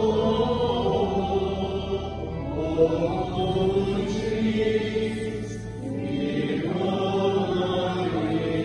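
Voices singing a slow chanted hymn in long held notes, over a steady low note that drops away about three seconds in.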